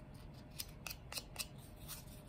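Five or so faint, sharp clicks, a few tenths of a second apart, from handling small nail tools such as a nail file.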